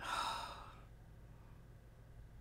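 A woman's single audible breath, under a second long and fading away, as she smells a fragrance product held up to her nose.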